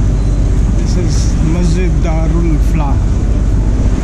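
A steady low rumble beside churning canal water, with a voice talking briefly in snatches.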